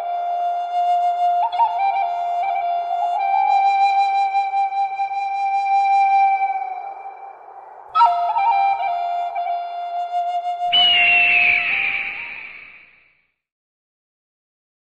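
Intro music: a solo flute playing a slow melody of long held notes in two phrases. About eleven seconds in it ends in a breathy rushing sound that fades away.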